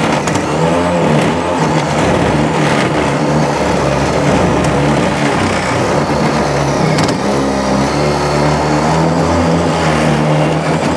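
Milwaukee brushless cordless drill running under load as its bit drills out the lock cylinder of an old ignition switch in a 1968 Chevrolet truck's dashboard. It runs steadily, with a brief catch about seven seconds in.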